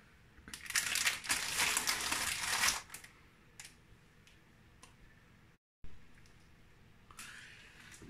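Packaging of a roll of ready-made puff pastry crinkling for about two seconds as it is handled and set down, followed by a few light clicks.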